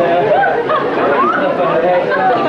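Several people talking over one another in a busy room: steady chatter.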